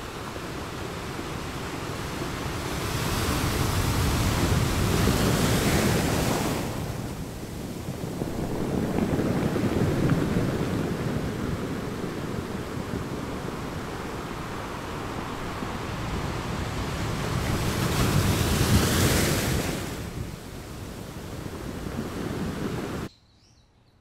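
Small sea waves breaking and washing onto a beach: a steady surf with two louder surges, one about four seconds in and another around eighteen seconds in. It cuts off suddenly about a second before the end.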